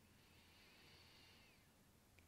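Near silence: room tone, with a faint, slow breath drawn in through the nose during a deep belly-breathing exercise.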